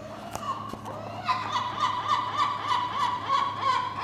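Gull calling, a rapid series of repeated high cries about four a second from about a second in.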